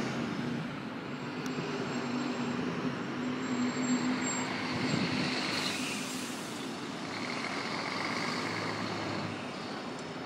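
Steady city road traffic, with car and heavier vehicle engines running past. The traffic swells louder a little past the middle, as one vehicle goes by close.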